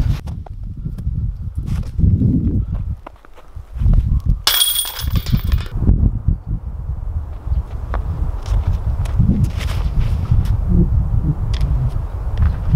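Outdoor wind buffeting the microphone, making an uneven low rumble, with scattered light clicks. About four and a half seconds in there is a brief high-pitched ringing sound lasting about a second.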